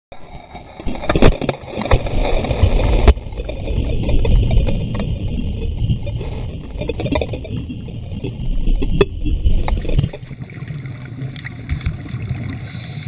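Underwater sound of churning water and bubbles, a muffled rumble broken by a few sharp knocks, about three in all.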